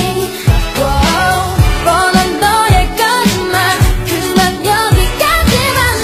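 An Asian pop song playing for a dance: sung vocals over a steady beat with a deep bass thump about once a second.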